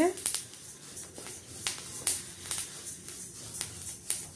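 Flaxseeds dry-roasting in a steel kadhai over a low flame, giving off irregular sharp pops and crackles as the seeds puff up, over the soft scrape of a wooden spatula stirring them.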